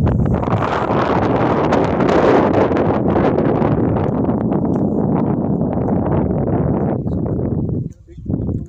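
Wind buffeting a phone's microphone: a steady, loud rumble and rush, with rustling crackles from the phone being handled.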